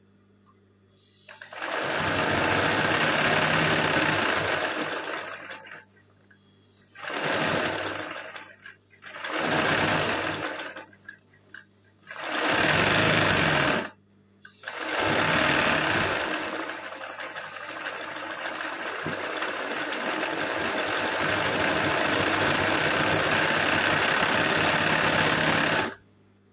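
Sewing machine running for free-motion embroidery, satin-filling small triangles with thread. It starts about a second in and runs for four seconds. Three short bursts with brief pauses follow, then one long run of about eleven seconds that stops abruptly at the end.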